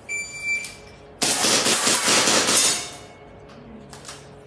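Electronic shot timer gives one high beep about half a second long. About a second later comes a rapid string of air-powered pistol shots at steel plates, lasting about a second and a half.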